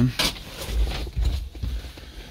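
Someone climbing into the cab of a small mini truck: a sharp knock just after the start, then dull thumps and rustling as they settle into the seat.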